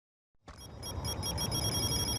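A bell-like electronic ring, trilling about five times a second and growing louder over a low rumble.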